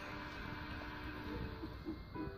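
Quiet, steady background noise in a room, with a few faint steady tones under it and no distinct event.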